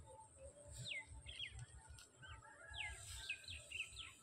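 Small birds calling with short, high chirps that fall in pitch, in a cluster about a second in and another near the end, over a low rumble.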